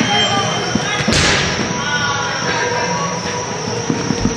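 A soccer ball struck hard in an indoor arena: one sharp bang about a second in, with a ringing echo in the hall, then a few lighter knocks near the end, amid players' voices.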